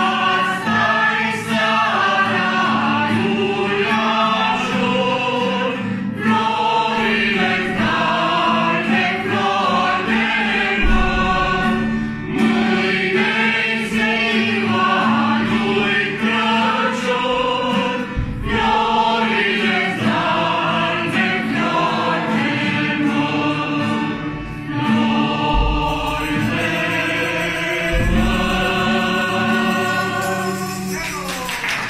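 A mixed group of men's and women's voices singing a Romanian Christmas carol (colind) together, accompanied by a strummed acoustic guitar.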